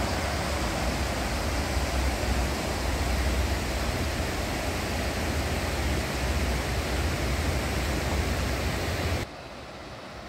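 Shallow river rushing over rocks and rapids, a steady hiss of water with a low rumble underneath. A little after nine seconds it drops suddenly to a quieter, softer flow.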